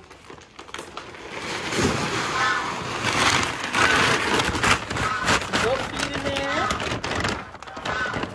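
Dry pelleted animal feed pouring out of a feed sack into a plastic bin: a rushing, rattling hiss that builds, is loudest in the middle, and tails off near the end.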